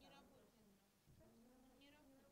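A faint, distant woman's voice speaking, barely above the room's hush.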